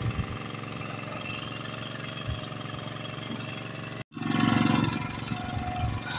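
Steady drone of a boat's engine running, with a short break about four seconds in and a louder low rumble for about a second after it.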